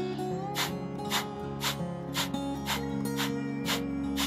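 A person's quick, forceful exhales through the nose, about two a second and evenly spaced: the Breath of Fire pranayama, with short active exhales and passive inhales. Soft guitar music plays underneath.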